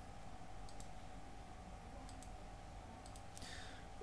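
A handful of faint computer mouse clicks, some in quick pairs, over a low steady hiss.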